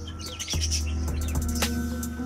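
Background music with a steady held bass note and sustained chords, with small cage birds chirping over it in short high calls, mostly in the first half second and again briefly around the middle.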